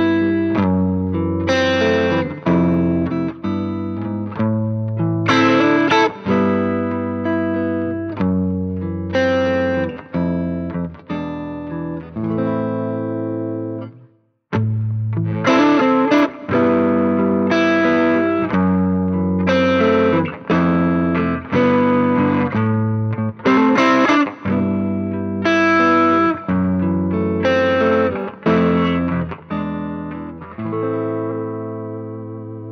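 Electric guitar played through an amp with a light clean-to-slight-breakup tone. First, a Stratocaster with a DiMarzio Cruiser humbucker in the neck position plays a chordal passage. After a short break about halfway through, a Stratocaster with a Fender Custom Shop Texas Special single-coil neck pickup plays a similar passage.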